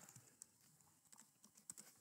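Near silence, with a few faint computer-keyboard clicks as a short command is typed and entered.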